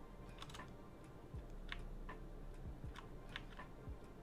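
Faint, scattered computer keyboard keystrokes: about half a dozen separate key clicks spread unevenly across a few seconds, as code is being edited.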